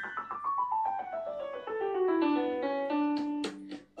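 Piano playing a quick run of notes that step steadily downward, one after another, ending in a few short chords near the end. It is the lead-in to a children's sing-along song.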